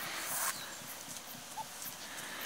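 Bohemian Shepherd dog and puppies running through grass close to the microphone: a burst of rustling at the start, then irregular soft paw thuds, with one short squeak about one and a half seconds in.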